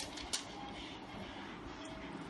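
Paper being folded and pressed flat by hand along a plastic ruler: one short sharp crackle about a third of a second in, over a steady background hiss.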